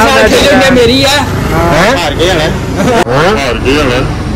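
Young men's voices, loud and animated, with laughter; in the middle the voice pitch swoops up and down in wide arches.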